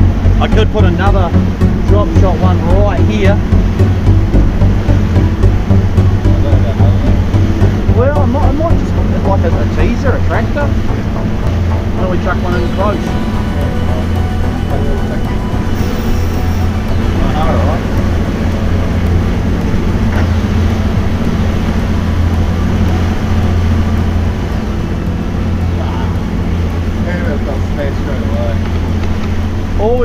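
Background music with a steady beat fades out over roughly the first ten seconds. It leaves the steady drone of the boat's outboard motor at trolling speed, with the rush of the wake and wind on the microphone.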